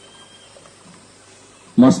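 Faint steady background hiss with a low hum, then a man's voice starts speaking loudly near the end.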